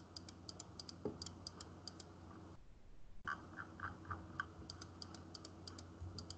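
Faint, rapid, irregular clicking of computer keys or buttons, typing-like, several clicks a second, over a low steady hum. The sound cuts out briefly about halfway through.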